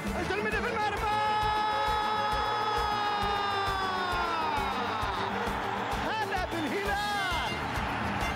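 A man's long drawn-out shout, held about four seconds and sliding down in pitch at the end, over background music with a steady beat: a football commentator's cry for a goal.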